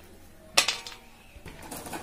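A single sharp metallic clink on a steel bowl about half a second in, with brief ringing, then faint handling sounds.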